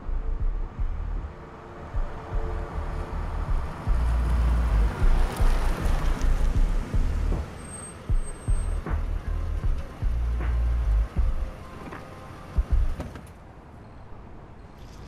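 A car drives slowly up and pulls to a stop, heard over music with a deep, heavy bass that comes and goes.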